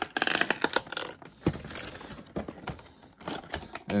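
Cardboard packaging being handled as a box insert flap is opened: a quick run of clicks in the first second, then scattered light taps and a knock.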